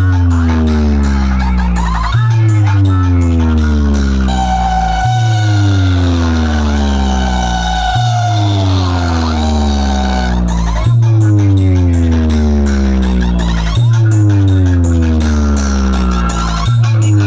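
Loud electronic dance track played through a large DJ sound-box speaker rig in a box competition. A heavy bass note hits about every three seconds, each with a falling sweep after it, and a thin melody plays over it in the middle.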